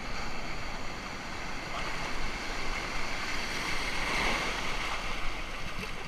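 Ocean surf: whitewater from breaking waves washing through the shallows as a steady rush of noise, swelling once about four seconds in.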